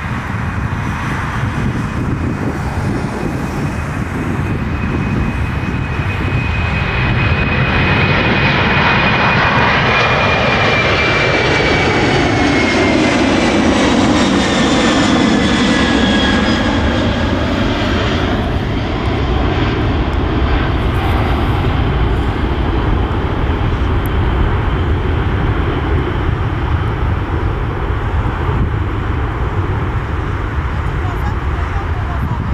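A Boeing 747's four jet engines at takeoff thrust as it lifts off and climbs away. The sound grows louder as it passes, with a high engine whine that falls in pitch as it goes by, then eases off a little in the last part.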